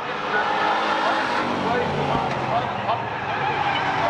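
A pack of Bomber-class stock cars racing past, their engines running loudly together, with spectators' voices from the grandstand over them.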